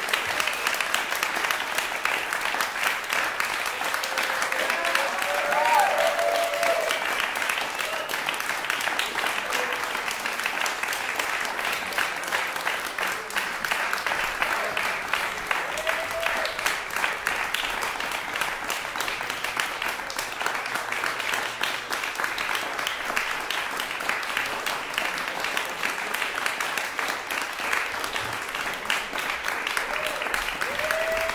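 Audience applauding steadily in a concert hall, with a few voices calling out within the clapping.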